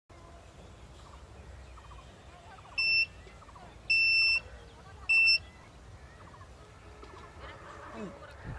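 Mini metal-detector kit's buzzer beeping three times (short, longer, short) in a steady high tone as the detector is swept over a person's waist. The beeps signal hidden metal, a knife.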